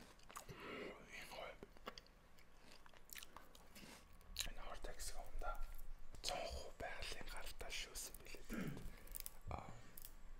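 Close-miked chewing and mouth sounds, with soft whispered talk that grows busier about halfway through.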